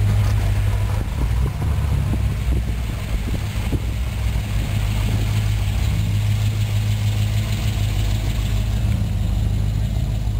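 Classic car engine idling close by: a steady low note with a slightly irregular beat.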